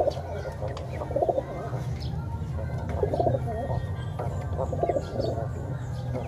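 Pigeons cooing: several low coos that come a second or two apart.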